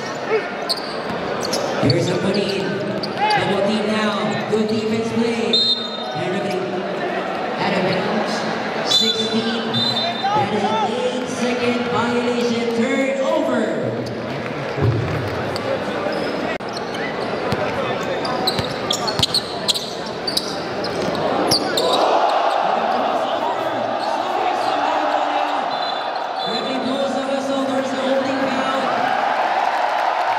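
Indoor basketball game: a ball bouncing on the hardwood, a few short high squeaks and shouting voices echoing in a large gym. About two-thirds of the way in the crowd noise swells into loud cheering.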